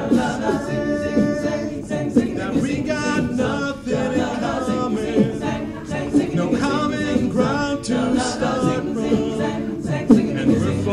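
Men's a cappella group singing sustained, wordless backing harmonies, with beatboxed percussion clicking through them.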